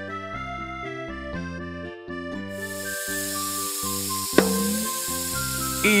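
Light background music, joined about halfway through by a steady hissing sound effect from the cartoon ice cream machine as it processes chocolate, with one sharp click near the end.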